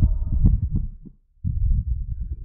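A faint echo of a man's shouted "Hello?" returns off the sandstone canyon walls in the first half-second. It sits over a low, irregular thumping rumble on the microphone, which drops out briefly just past the middle.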